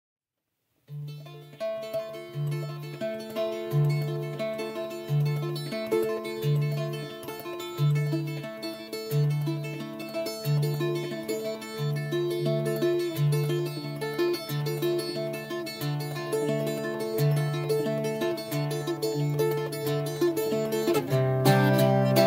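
Irish bouzouki playing a tune: plucked melody notes over a low note that repeats about one and a half times a second, starting about a second in. Near the end the playing grows fuller and louder.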